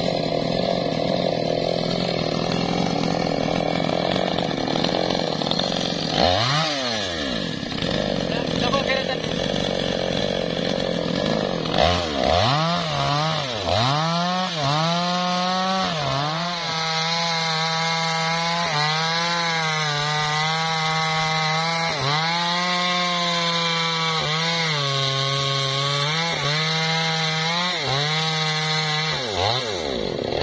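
Two-stroke chainsaw cutting into a teak trunk near full throttle. Its engine note dips and recovers every second or two as the chain bogs under load in the wood. About six seconds in, the revs drop away briefly and climb back.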